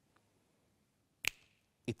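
A single sharp finger snap about a second in, made as the magic pass that completes the card trick.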